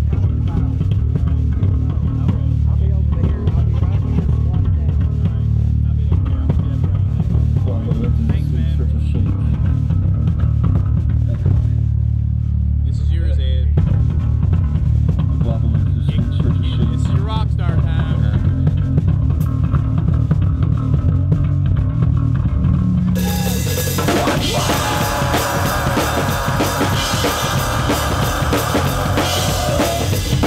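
Heavy metal band playing live, drum kit and bass guitar up front. About three-quarters of the way in the sound turns much brighter as cymbals and guitar come in fully.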